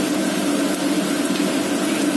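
Sliced onions sizzling steadily in hot oil in a frying pan as they sauté toward golden, over a steady low hum.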